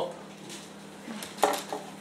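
A brief cluster of light clicks and knocks about one and a half seconds in, from a Bible being handled on a wooden lectern, over a low steady room hum.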